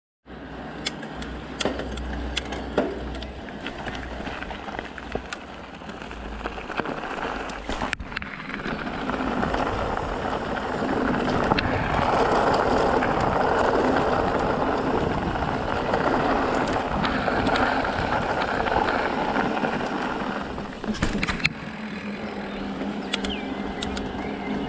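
Knobby tyres of a Specialized Turbo Levo e-mountain bike rolling along, louder for the middle stretch as they crunch over a gravel track, with sharp knocks and rattles from bumps throughout.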